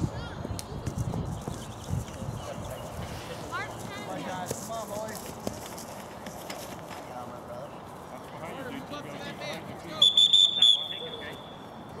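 A referee's whistle, one short blast of under a second about ten seconds in, over faint distant voices of players and spectators on the field.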